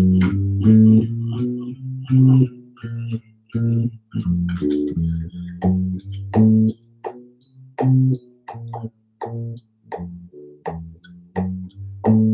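Solo electric bass guitar playing an improvised single-note line over a 2-5-1 in C: plucked notes in quick runs, with short gaps between phrases.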